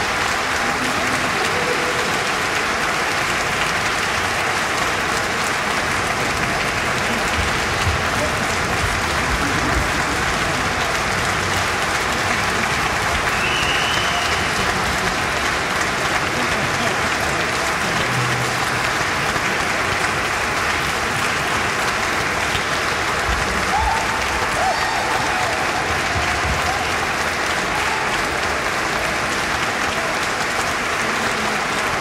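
Audience applauding steadily, a dense, even clapping that holds its level throughout.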